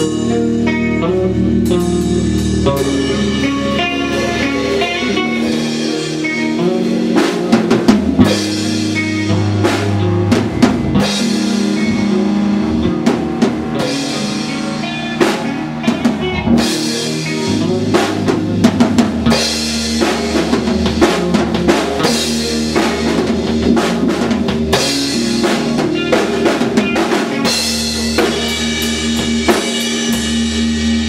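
A rock band playing live: a Pearl drum kit, with bass drum, snare and frequent cymbal crashes, over held electric guitar and bass notes.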